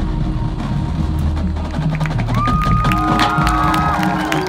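High school marching band and front ensemble playing loudly: heavy low drum and bass hits with percussion strikes, and a high sustained note sliding in about two seconds in.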